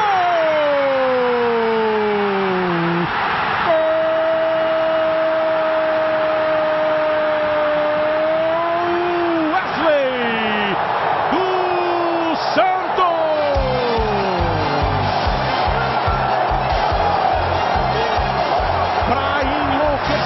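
Brazilian TV commentator's long drawn-out goal cry over a roaring stadium crowd. The voice falls over the first few seconds, then holds one high note for about six seconds, followed by shorter cries. From about halfway through, a steady drumbeat comes in under the crowd.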